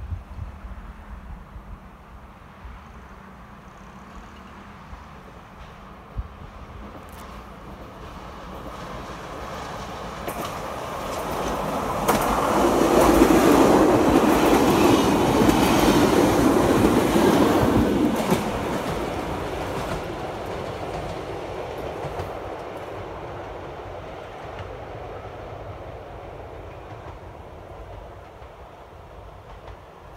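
A passenger train passing close by on the track. It grows louder over several seconds, is loudest for about six seconds as it goes past, then fades slowly into the distance.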